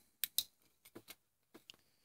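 A few light clicks and taps of a hand on steel automatic-transmission input drums: two sharper clicks near the start, then a few faint ticks.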